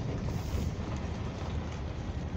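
Car driving slowly, a steady low rumble of engine and tyres with no distinct knocks or other events.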